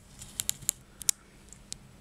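Small square glass jar handled on a table: several light, sharp clicks and taps, spaced irregularly.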